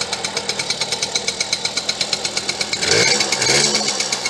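Small mini-bike engine idling with an even pulse, then blipped louder with a brief rise in pitch about three seconds in before dropping back to idle.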